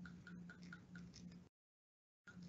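Faint rhythmic ticking, about four ticks a second, that cuts off abruptly about a second and a half in.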